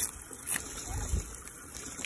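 Green husk being pulled down and torn off an ear of fresh sweet corn: a couple of short crisp tearing rustles, about half a second and a second in.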